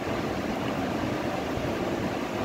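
Steady background noise: an even hiss with a low rumble and no distinct events.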